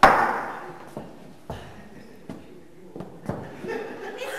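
A loud bang at the dining table rings out in the hall, followed by a few lighter knocks.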